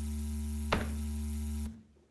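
Amplified electrical hum from a turntable-and-mixer setup, played as part of an improvised electronic performance: a steady buzzing drone with a low mains-hum base and a stack of overtones. It switches in abruptly, holds level with one sharp click partway through, then cuts off after a little under two seconds.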